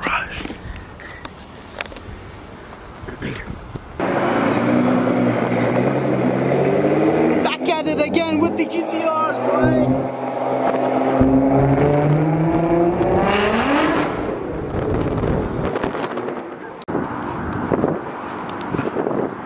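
A car engine running under way, its pitch sliding down and up with speed and rising sharply near the end. The engine sound comes in suddenly about four seconds in, after a quieter stretch of background noise.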